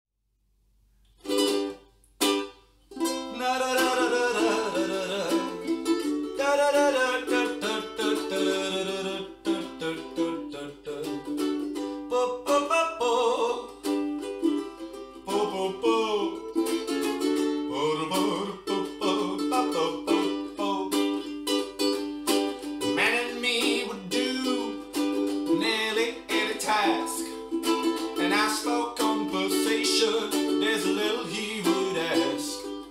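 Ukulele strummed, with a man singing along. Two single strums come about a second in, then steady strumming with the voice from about three seconds.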